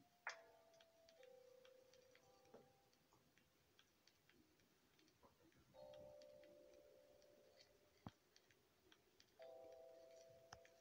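Near silence: room tone with a faint steady hum that comes and goes, and a single click about eight seconds in.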